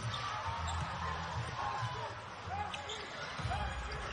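Basketball being dribbled on a hardwood court during play, with steady arena crowd noise and faint short voice-like calls.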